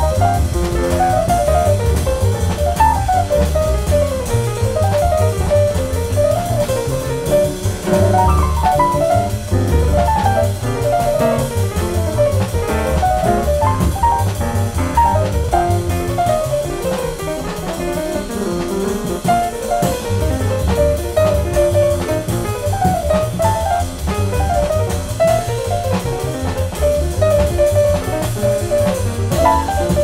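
Live bebop jazz from a piano trio: fast piano runs over walking double bass and drum kit, played at a quick tempo.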